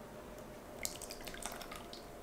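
Liquid cake batter pouring from a bowl onto flour in a glass mixing bowl, starting just under halfway in with a run of small wet splats and drips.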